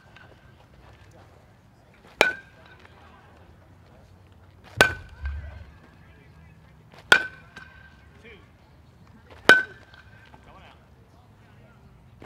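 Youth baseball player's metal bat hitting pitched balls four times, about every two and a half seconds. Each contact is a sharp crack with a brief metallic ring.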